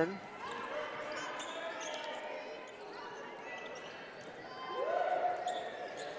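Basketball game court sound: the ball dribbled on the hardwood floor, with sneaker squeaks and scattered voices in a large, echoing arena. Near the end a voice calls out and holds the note for about a second.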